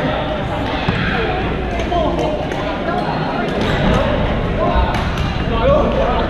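Badminton play in a large gym hall: scattered sharp racket hits on shuttlecocks and short sneaker squeaks on the court floor over a steady chatter of players' voices.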